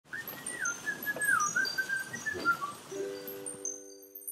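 Animated-logo jingle: a wavering, gliding bird-like whistle over a wash of noise. About three seconds in it gives way to a short held chord and bright high chimes.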